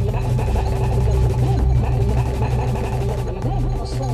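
Experimental electronic music: a dense, steady low drone with a held tone above it and a busy flurry of short gliding, warbling blips.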